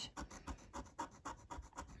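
The coating of a lottery scratch card being scraped off with a small tool, in a quick run of short, quiet scratching strokes.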